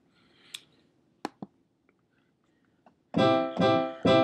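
A piano chord from GarageBand's Grand Piano software instrument, played from a MIDI keyboard. It starts about three seconds in and stops within a second when the keys are released: not sustained. A few faint clicks come before it.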